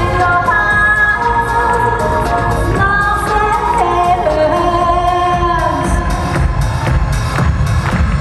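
A woman singing live into a microphone over pop accompaniment with a drum beat. Her long held notes end about six seconds in, and the beat carries on alone.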